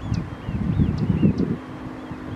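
Wind buffeting the camera microphone in low, gusty rumbles, strongest mid-way. Faint, short high calls of waterfowl on the pond come through behind it, some gliding down in pitch.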